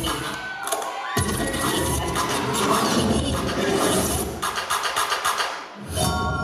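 Dance music playing for a stage routine, with an audience cheering and shouting over it. The music drops out briefly just before the end.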